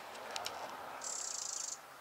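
A high, thin trill from a small bird in the background, lasting under a second, about a second in, with a few faint clicks just before it.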